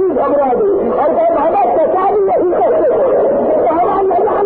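A man's voice declaiming in long, drawn-out phrases with held and gliding notes, heard through an old recording that has lost all its treble.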